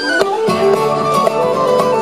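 Live Celtic folk instrumental: a whistle plays a quick, ornamented melody over acoustic guitar accompaniment.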